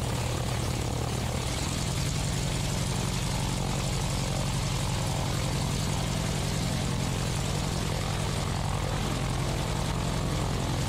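Waco YMF-5 biplane's Jacobs seven-cylinder radial engine and propeller running at low taxi power, a steady, even throb, with wind hiss on the microphone.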